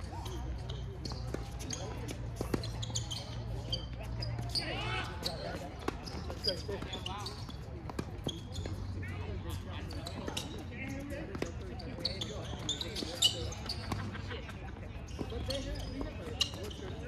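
Tennis balls struck by rackets and bouncing on a hard court during a doubles rally: sharp pops a few seconds apart, the loudest about 13 s in, with voices in the background.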